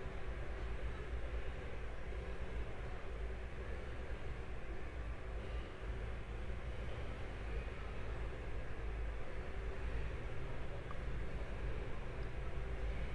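Steady background noise: a low rumble with a light hiss, unchanging and without distinct sounds.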